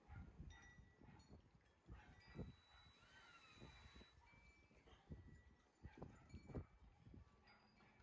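Faint wind rumbling on the microphone, with a few faint animal calls, including a short rise-and-fall call about three seconds in.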